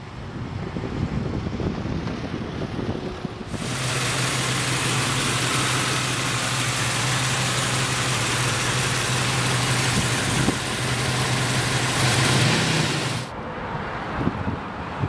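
1973 Plymouth Barracuda's 340 small-block V8 idling steadily with the hood open, its pitch rising slightly near the end. Before that, a few seconds of quieter street sound with wind on the microphone.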